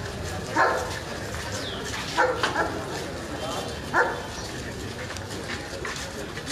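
A dog barking in short calls over the chatter of a walking crowd: one bark about half a second in, three quick barks about two seconds in, and one more at about four seconds.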